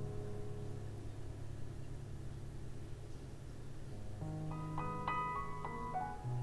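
Background piano music: soft held chords, with new notes struck from about four seconds in.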